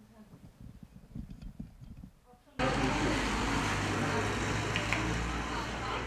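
Faint low rumbling, then about two and a half seconds in a sudden jump to louder outdoor street sound: a steady low hum with people talking in the background.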